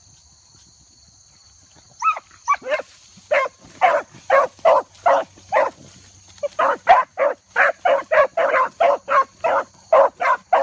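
Dogs barking on a rabbit chase, starting about two seconds in and then going on steadily at about two to three barks a second. Crickets chirp steadily underneath.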